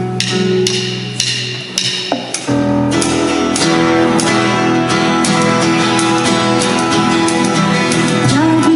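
Live church worship band playing an instrumental passage, led by a strummed guitar over sustained low notes; the band grows fuller about two and a half seconds in.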